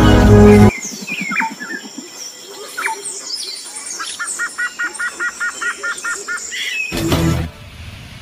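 Songbirds chirping in woodland, one of them repeating a short double note about five times a second for a couple of seconds midway. Music cuts off just after the start and comes back near the end.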